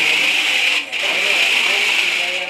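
Small electric motor and gears of a toy RC four-wheel-drive car whining steadily as it drives, cutting out briefly just under a second in.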